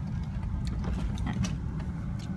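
Car cabin noise while driving: a steady low rumble of engine and tyres on the road, heard from inside the car, with a few faint clicks.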